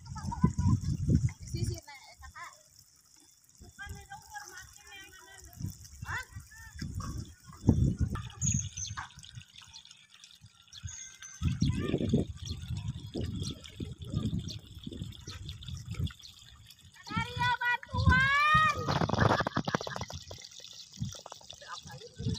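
Voices of villagers and children calling out at a distance, on and off, with one long rising call near the end. Low rumbles and thumps on the microphone fill the gaps between them.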